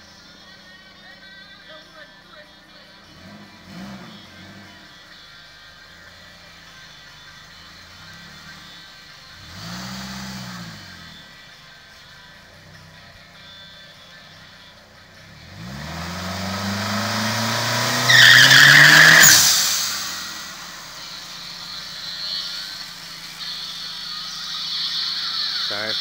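Engine of a turbocharged 1990 Dodge Caravan minivan, blipped up and back down twice, then revved in a long rise for about four seconds. Its tyres squeal at the peak, the loudest moment, before the revs drop away.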